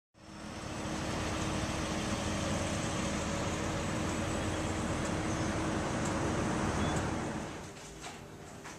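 Steady outdoor background noise with a constant low hum running through it. It drops in level near the end, giving way to a quieter indoor room sound.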